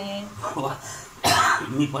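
A low man's voice murmuring, then a short, loud cough about a second and a quarter in, followed by more low speech.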